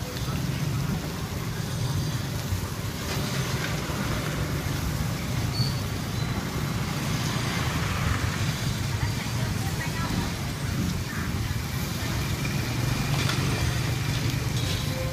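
Outdoor street ambience: a steady low rumble of traffic or engines, with indistinct voices in the background.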